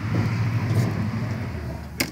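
Steady outdoor rumble of road traffic, an even noise with a low hum underneath.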